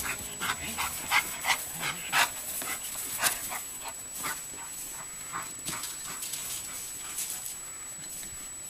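A dog running across a grass yard: a string of short, quick breaths and paw sounds, frequent and louder at first, then thinning and fading toward the end.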